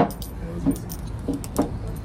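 A plastic drink bottle being gripped and handled close to the microphone: one sharp click at the start, then a few smaller clicks and crackles, over a steady low street rumble.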